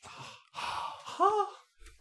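A person's breathy sigh in a pause between words, with a short voiced sound that rises and falls in pitch a little over a second in.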